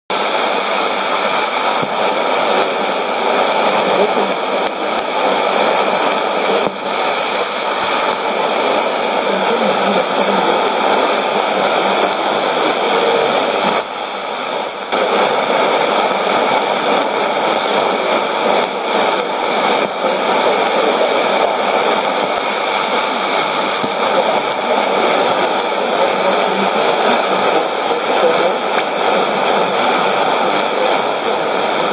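Shortwave radio receiver tuned to a weak AM station on 4910 kHz: a steady wash of static and hiss through the set's narrow audio, with a thin high whistle coming in briefly three times.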